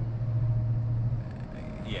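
A loud pickup truck's steady low drone, heard from inside the cab while cruising at highway speed, easing off briefly a little after a second in.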